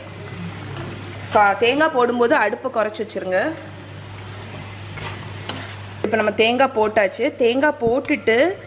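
Steel ladle stirring and scraping in a stainless-steel kadai of simmering curry as a buttermilk mixture is poured in, with a few sharp clicks of metal on metal about five seconds in.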